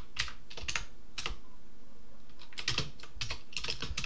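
Typing on a computer keyboard: a few scattered keystrokes in the first second and a half, a short pause, then a quick run of keystrokes about three seconds in.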